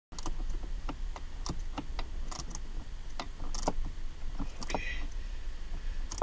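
Irregular small clicks and taps of parts being handled and fitted at a Mazda6's gear-shifter base, over a steady low rumble.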